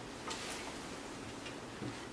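Faint scattered clicks and small knocks over a steady hiss of room noise as a person shifts and settles into a seat.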